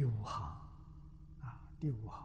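An elderly man's voice making short breathy vocal sounds with quickly falling pitch, one right at the start and two more near the end, over a steady low hum.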